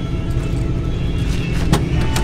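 A steady low rumble, with a single sharp click near the end as the door handle of a 1971 Chevrolet pickup is pulled to open the door.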